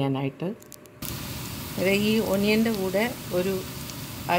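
Onions frying in hot oil in a steel pot: a steady sizzle that sets in suddenly about a second in, with a voice talking over it.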